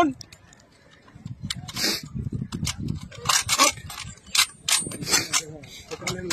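A volley from an honour guard's rifles fired in a funeral gun salute, one sharp report about two seconds in, among shouted commands and crowd voices. Several short sharp clicks and knocks follow.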